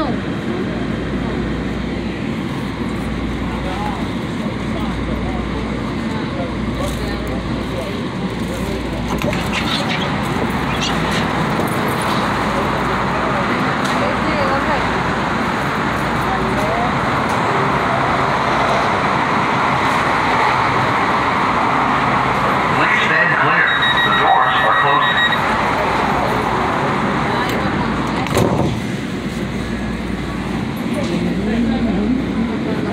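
Steady rumble of a light-rail train and freeway traffic around a car standing at an elevated station. The noise builds slowly, and a brief high ringing tone sounds about 23 seconds in, then the noise drops sharply near the end.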